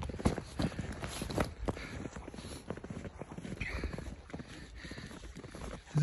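Footsteps in fresh snow: a person walking at a steady pace, about two to three steps a second.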